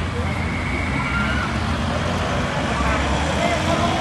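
Steady road traffic rumble, with faint indistinct voices in the background.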